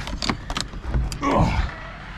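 Metal lever handle and latch of a door clicking several times as the door is opened, followed a little over a second in by a short sound that falls in pitch.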